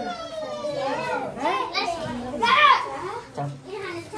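A group of children chattering and calling out over one another, with one louder high-pitched call about two and a half seconds in.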